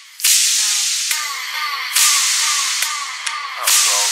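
Electronic dance music intro built on bright white-noise hits that start sharply and fade away, repeating about every second and a half to two seconds, with faint synth notes and clicks between them.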